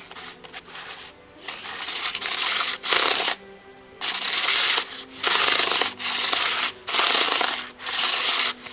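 Fingers brushing and rubbing over the rows of Arteza coloured pencils in their tin: a dry rustle in repeated strokes of about a second each.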